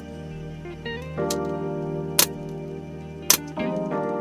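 A pneumatic brad nailer fires three sharp shots about a second apart, driving nails through a poplar face frame into a plywood cabinet. Background guitar music with slide guitar plays throughout.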